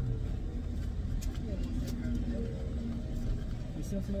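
Steady low rumble of a car idling, heard from inside the cabin, with a few faint clicks and a muffled voice in the background.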